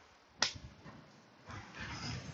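A single sharp plastic click about half a second in, as the snap-fit plastic frame of a motorcycle foam air filter is pulled apart, followed by faint handling noise.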